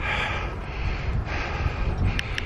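A cyclist breathing hard, two heavy breaths about a second and a half apart, out of breath from riding fast, over a steady rumble of wind on the microphone.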